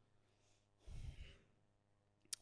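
A man's single breath out into a handheld microphone, about half a second long near the middle, in otherwise near silence.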